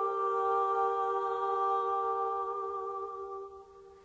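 A cappella singing: one long held note, steady in pitch, that fades away over the last second.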